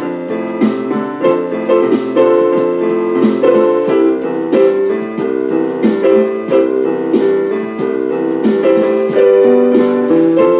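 Electronic keyboard played with a piano sound: chords and melody struck in a steady rhythm.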